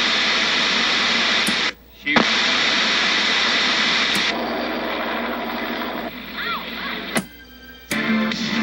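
Loud, even hiss of static, like a radio or TV between stations, as a skit sound effect. It cuts out briefly about two seconds in and thins out after about four seconds, with a sharp click near the end.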